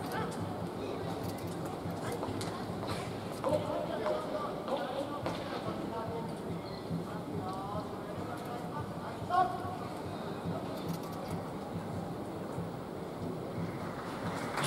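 Large sports-hall ambience: faint, scattered audience chatter over a steady background hum, with a few small knocks.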